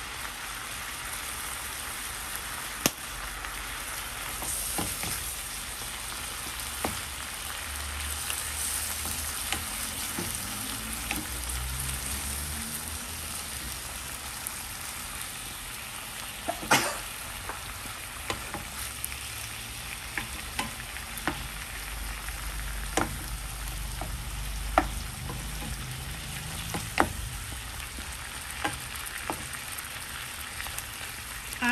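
Chicken breast pieces sizzling in hot oil in a nonstick pan: a steady frying hiss. Occasional sharp knocks come from a wooden spoon against the pan as the meat is stirred.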